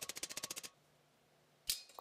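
Small hammer tapping very rapidly and evenly on the mild-steel comb of a helmet, working it down onto the shell; the taps stop under a second in, followed by one sharp knock near the end.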